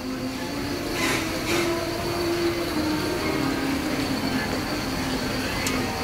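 Coin-operated kiddie carousel ride running: a steady mechanical hum with a faint high whine.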